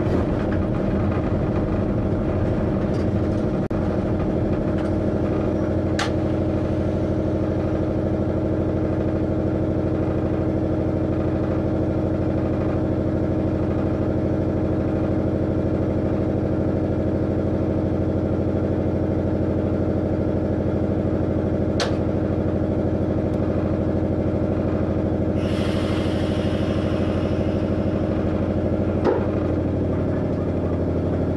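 Train cab at a standstill: the running equipment gives a steady hum made of several fixed tones, after the rolling noise dies away in the first few seconds. Two sharp clicks are heard well apart, and there is a short hiss near the end.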